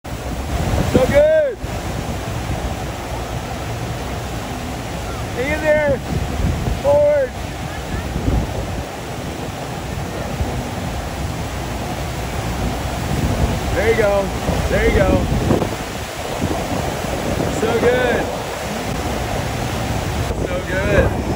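Steady rush of water pouring up a FlowRider wave simulator, with wind on the microphone, broken every few seconds by short shouted cheers.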